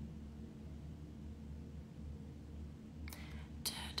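A faint steady low hum of room and microphone noise for about three seconds, then a woman softly vocalising "da, da" under her breath near the end.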